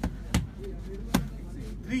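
Punches in a jab, cross, uppercut combination landing on a padded target: three sharp smacks, two in quick succession and a third under a second later.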